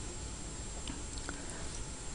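A quiet pause between speech: faint steady room tone and hiss, with a couple of very faint small ticks about a second in.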